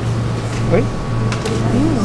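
Speech: a faint voice asks "Oi?" over a steady low hum.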